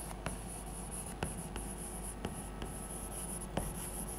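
Chalk writing on a chalkboard: soft scratching strokes with a few sharp taps as the chalk strikes the board.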